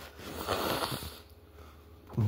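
A man's breath close to the microphone: one noisy exhale lasting about a second.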